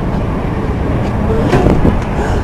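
City street traffic noise, a steady low rumble of passing vehicles, with a brief faint voice and a short knock about a second and a half in.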